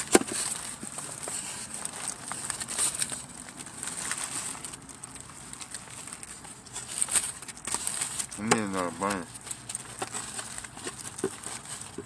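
A man biting into and chewing a large cheeseburger: soft, scattered mouth and food noises, with faint crinkling from the paper wrapper. A brief pitched voice sound, rising and falling, comes about eight and a half seconds in.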